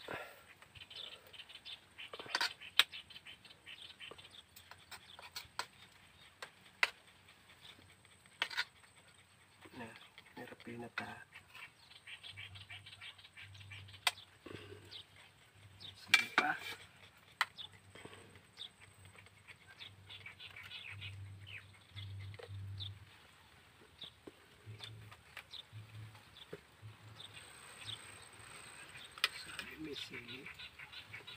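A metal spoon clinks and scrapes against metal cooking pots and a plate as rice and stew are dished out, with sharp clinks every few seconds.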